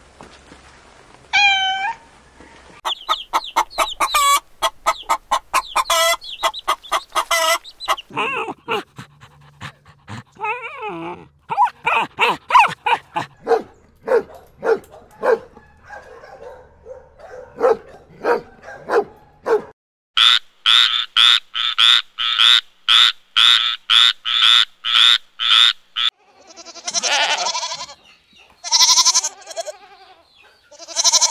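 A run of animal calls. A kitten meows, small-dog barks and yaps fill the middle with a quick regular series of about three a second, and goats bleat near the end.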